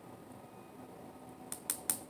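Faint room tone, then three quick, sharp clicks about a second and a half in.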